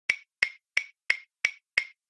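Clock ticking sound effect: six sharp, even ticks, about three a second.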